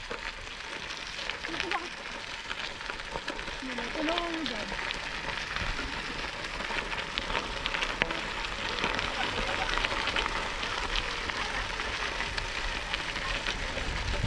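Bicycle tyres rolling over a gravel trail: a steady crackle of gravel under the wheels, with faint voices about four seconds in.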